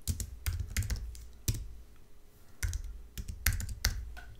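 Typing on a computer keyboard: quick runs of key clicks with a pause of about a second in the middle.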